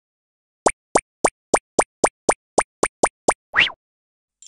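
Cartoon sound effects for an animated intro: a quick run of ten short plops, about three and a half a second, then one longer rising swoop near the end.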